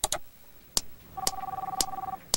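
Sharp metallic clacks about every half second from a swinging-ball desk toy, with an electronic telephone ringing once in the middle, a two-note trill lasting about a second.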